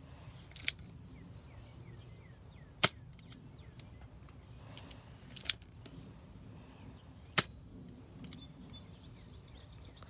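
Airsoft revolver firing outdoors: four sharp snaps a few seconds apart, the second and fourth the loudest.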